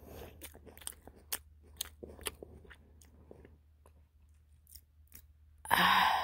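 Close-miked chewing of a raw baby carrot: crisp crunches come thick and fast for the first three seconds, then more sparsely. A sudden loud breathy sound at the microphone comes just before the end.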